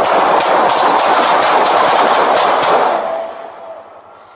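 Rapid volley of gunshots from several police officers, overloading a body-worn camera's microphone into one continuous harsh crackle for about three seconds before fading out.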